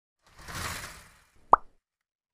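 Edited-in intro sound effect: a soft whoosh swells and fades over about a second, then a single short, sharp pop, a cartoon-style plop.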